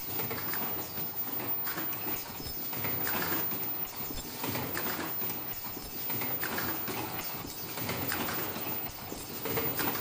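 Automatic disposable flat face mask production line running: the mask-body machine and earloop welding stations clacking and clattering repeatedly over a steady machine hum.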